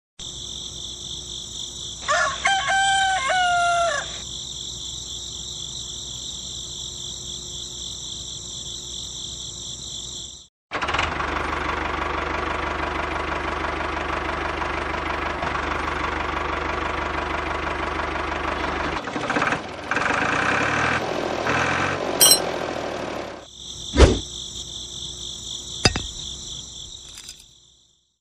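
Crickets chirping steadily, with a rooster crowing once about two seconds in. After a brief dropout, an engine runs steadily for about eight seconds, then changes and fades. The cricket chirping returns near the end, with two sharp clicks.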